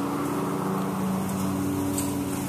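A steady low machine hum of a few even tones, running unchanged.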